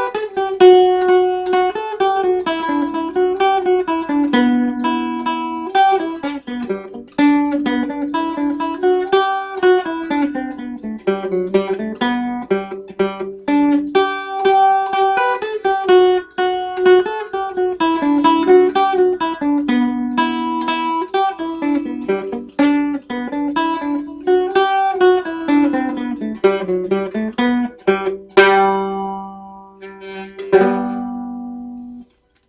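A waldzither, a steel-strung German cittern about 110 years old, played solo: a lively, fast single-note picked melody. Near the end a strummed chord rings out.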